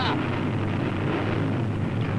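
M50 Ontos tank destroyer's engine running steadily, a constant low drone.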